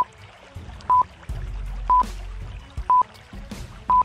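Riddle countdown timer beeping once a second, a short high beep each time, over a low steady background drone.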